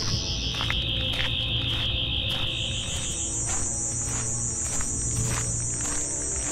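Sonic screwdriver sound effect: a high warbling electronic whine that drops in pitch at the start, then jumps higher about two and a half seconds in. It plays over a low music drone.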